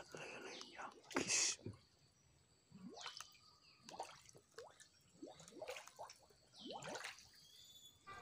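Faint small water plops and drips, a string of short blips rising in pitch about once a second, as catfish stir and break the surface of a shallow pool.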